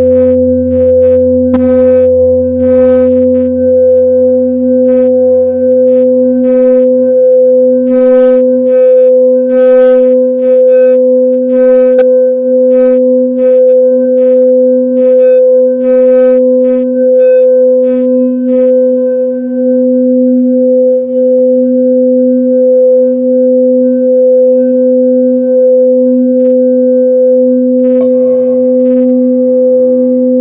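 Tibetan singing bowl sung by rubbing a mallet around its rim: one sustained, unbroken tone with a strong lower and upper partial, swelling and fading about once a second. Bright high overtones flicker over it during the first twenty seconds, and near the end a further bowl tone joins.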